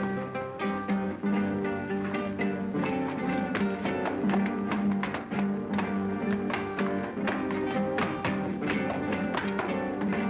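Acoustic guitars playing a lively instrumental dance tune in quick plucked and strummed notes, on a thin early sound-film recording.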